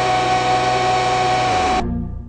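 Loud, heavily distorted held sound with a dense buzz of overtones at one steady pitch, from a YouTube Poop edit. It cuts off abruptly near the end.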